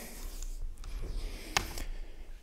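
A pause in a talk: room tone with a steady low hum and faint rustling near the microphone, and one short noise about one and a half seconds in.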